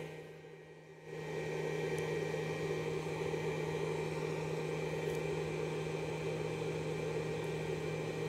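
A steady machine whir over a constant low electrical hum; the whir comes in about a second in and holds level.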